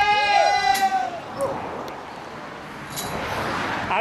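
A woman screams as she drops backward off a bridge on a bungee jump: one high, held scream lasting about a second, followed by a steady rushing noise.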